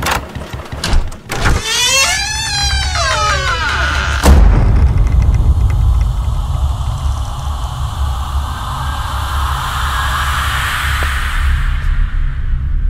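A door latch clicks, then a long, wavering creak as a wooden door swings open, followed by a heavy hit and a loud, low droning rumble of horror-film sound design.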